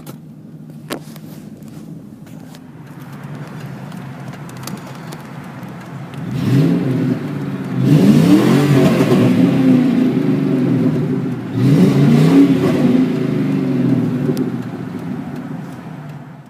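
1997 Ford Mustang GT's 4.6-litre two-valve V8 through a Flowmaster Super 44 exhaust, idling steadily and then revved several times, its pitch rising and falling with each rev. The revs are heard from inside the car.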